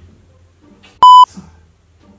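A single short, very loud, pure electronic censor bleep about a second in, lasting about a quarter of a second and covering a swear word.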